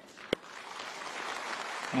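Audience applauding, the clapping growing louder across the two seconds, with one sharp click about a third of a second in.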